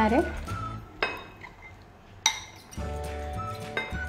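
Glassware clinking as soaked chana dal is scraped out of a glass bowl onto a glass plate with a spatula: two sharp clinks about a second apart. Soft background music comes in near the end.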